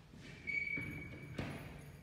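A faint, short high-pitched squeak ending in one sharp click about a second and a half in, over low handling or movement noise.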